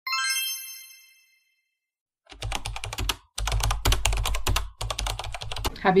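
A bright chime rings once and fades over about a second. After a short silence, a fast run of clicks like typing on a computer keyboard comes in three stretches over a low hum.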